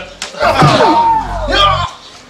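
Staged fight: a sharp slap-like hit, then a loud, long cry that wavers up and down in pitch.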